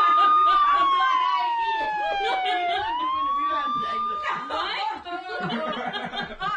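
A siren wailing. Its tone holds high, slides slowly down over about two seconds, sweeps back up and holds again, then stops about four and a half seconds in, with laughter and chatter under it.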